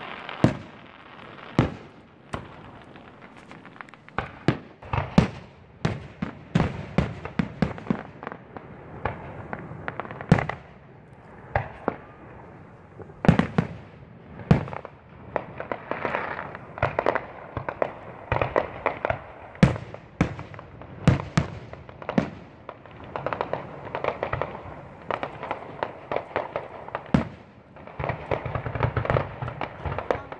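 Aerial fireworks display: shells bursting overhead in an irregular run of sharp bangs, dozens over the span, some much louder than the rest.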